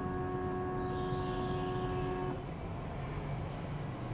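Semi-automatic biochemistry analyzer drawing up a sample: its aspiration pump runs with a steady whine for a bit over two seconds, then stops, over a low steady hum.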